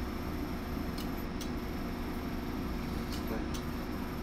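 Steady fan-like machine hum and hiss with a faint high whine, broken by two pairs of faint clicks, about one second in and again about three and a third seconds in.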